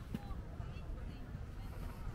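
Outdoor park ambience: the indistinct murmur of people's voices and a few short, high bird chirps over a steady low rumble, with a single sharp click just after the start.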